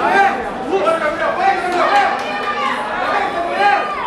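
Spectators shouting and talking over one another, many voices overlapping.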